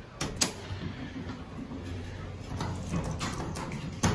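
Elevator car push buttons clicking as they are pressed: two sharp clicks near the start and a run of quicker clicks in the second half, over a low steady hum in the cab.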